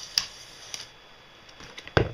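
A few short clicks and light taps from handling a steel tape measure and pencil over cardboard, the sharpest click at the very end.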